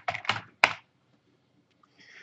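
Computer keyboard being typed on: a few quick keystrokes within the first second.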